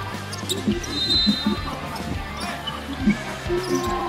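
A basketball bouncing on a wooden court during play, over steady background music in the arena.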